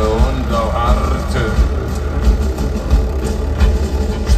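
Live industrial metal band playing loud, with heavy bass and drums pounding throughout. A deep male voice sings over it in the first second or so.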